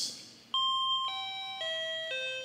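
Four electronic notes on a toy keyboard, played one after another about half a second apart and falling through a major triad (top note, fifth, third, root), each held so they ring together like a station announcement chime. It starts about half a second in, after a short click.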